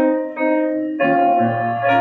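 Grand piano playing a hymn tune, with new chords struck at the start, about half a second in and again about a second in, and a low bass note added soon after.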